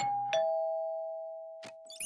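Two-note doorbell chime: a higher ding and, about a third of a second later, a lower dong, both ringing on and fading slowly.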